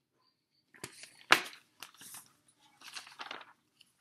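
Pages of a large paperback picture book rustling and crackling as the book is lowered and a page is turned. There is one sharp crack about a second in, the loudest sound, then a few shorter rustles.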